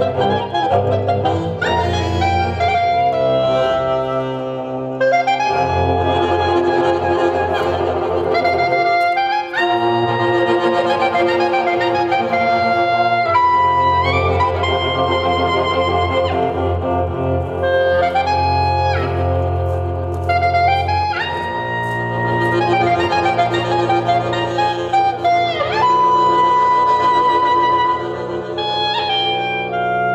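Folk ensemble playing an instrumental passage: clarinet carries the melody in long held notes with slides between them, over accordion, strummed acoustic guitar and bowed cello.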